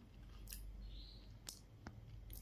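A person chewing a bite of soft bread with the mouth closed, heard only as a few faint, sharp mouth clicks over low room hiss.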